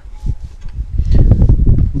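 Wind buffeting the microphone: a rough low rumble that grows louder about a second in.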